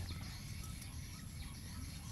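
Quiet outdoor ambience: a steady low rumble with a few faint, short bird calls in the distance.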